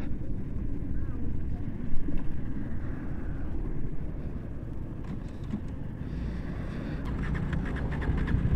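KTM Duke 250's single-cylinder engine dying as it runs out of fuel, with low wind and road rumble as the motorcycle keeps rolling.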